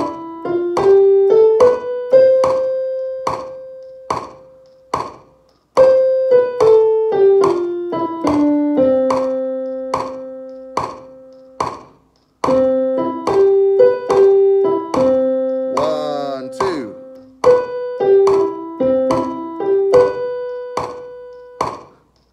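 Portable electronic keyboard with a piano voice playing a C major scale up and down over one octave, one note at a time. The top and bottom notes are held for a few seconds, and then the scale is played again.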